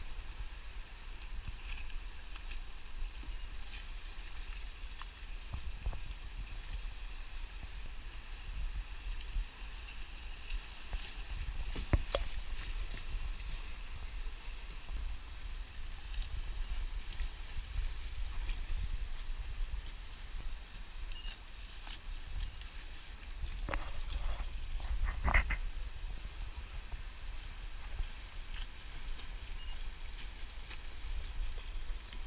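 River water rushing steadily over a shallow riffle, with wind rumbling on the microphone. A sharp knock comes about twelve seconds in and a quick run of knocks near the end, the last the loudest.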